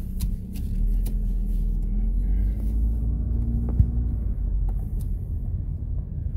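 Car cabin rumble of engine and road while driving, steady and low, with the engine note rising a little near the middle. A single short knock a little past the middle.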